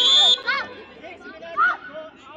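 A whistle's long steady blast cuts off about a third of a second in, followed by short shouted calls from the players and onlookers.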